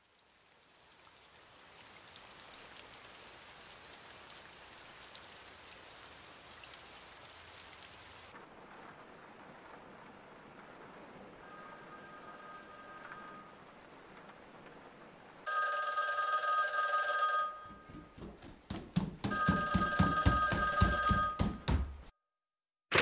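Steady rain falling, then an old-fashioned telephone's bell ringing: a faint ring about twelve seconds in, then two loud rings near the end, the clapper rattling rapidly against the bells.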